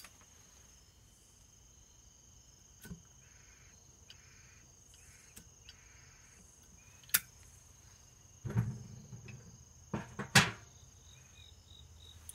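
Steady high-pitched chirring of evening insects, over which a tobacco pipe is relit: a few sharp lighter clicks, the loudest about seven seconds in, then about two seconds of low rushing and puffing near the end as the pipe is drawn on.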